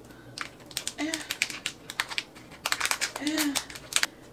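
Small plastic item and packaging being handled, giving many irregular sharp clicks and light crinkles as it is pressed and worked to close, with two brief hummed sounds from the woman.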